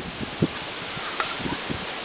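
Steady outdoor wind noise on the microphone, with two faint ticks about half a second and a second in.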